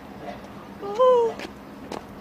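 A woman's drawn-out sleepy yawn, one high voiced 'aah' of about half a second that rises slightly and then falls away, about a second in.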